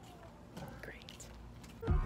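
A woman's quiet, whispered speech. Near the end, upbeat music with a steady beat suddenly starts.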